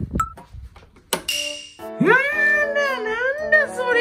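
Background music, with a brief hiss about a second in, then a Maltese puppy's high whine that rises sharply and wavers for about two seconds.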